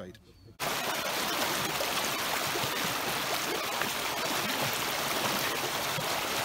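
Shallow forest stream running fast over stones, a steady rush of water that starts suddenly about half a second in.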